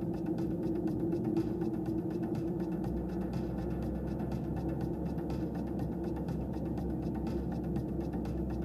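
Steady in-car driving noise from a car on a paved road, a low engine and tyre rumble, with music playing over it.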